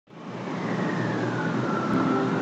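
A steady rushing noise swells up from silence in the first half second, with a faint high tone slowly gliding downward through it.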